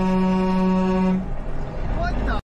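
A vehicle horn sounding in one long, steady blast that cuts off a little over a second in, leaving engine and road noise.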